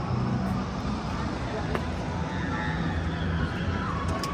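Indistinct voices over a steady low rumble and hiss.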